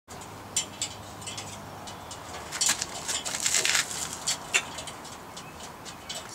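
A dog's claws clicking and scraping on the metal rungs of an aluminium extension ladder as it climbs: scattered sharp clicks, with a busier patch of scrabbling near the middle.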